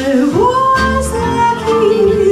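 A woman singing with acoustic guitar accompaniment, her voice sliding up to a long held note about half a second in, then settling onto a lower note.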